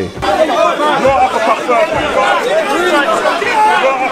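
Ringside crowd at a boxing bout shouting and calling out over one another, many voices overlapping at once in a large hall.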